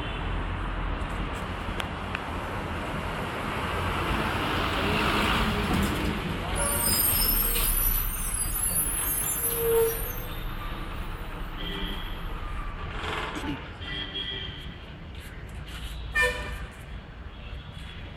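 Urban road traffic: vehicle engines running steadily, with short horn toots several times in the second half and a high-pitched squeal, like brakes, around seven to nine seconds in.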